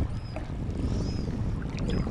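Shallow seawater swishing and splashing around the legs of someone wading knee-deep, with wind rumbling on the microphone.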